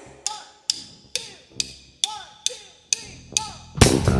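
Drumsticks clicked together eight times, about two a second, counting off a rock band. Just before the end, the band comes in with electric guitar and drum kit.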